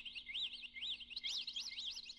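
Songbirds singing: a fast run of repeated rising-and-falling whistled notes, about four a second, with a second bird's song overlapping from about a second in.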